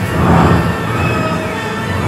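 Game music and sound effects from a Grand Cross Chronicle coin-pusher machine as its Grand Jackpot Chance begins, with a brief swell about half a second in.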